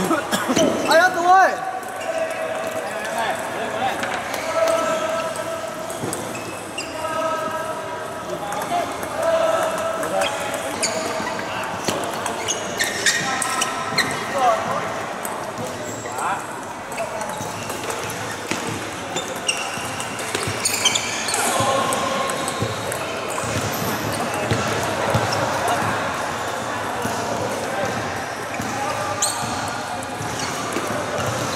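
Table tennis balls clicking off bats and tables in an irregular run of short, sharp hits from several tables in play. Voices and calls of players sound in the background.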